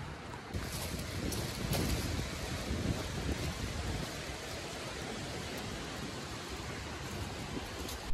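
Wind rushing over a handheld phone's microphone during a walk, a steady buffeting noise heaviest in the low end, with a few light clicks in the first couple of seconds.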